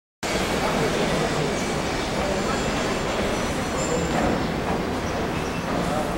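Passenger train carriages moving along a station platform, giving a steady, even noise.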